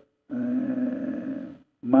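A man's voice holding one drawn-out vocal sound at a steady pitch for about a second and a half.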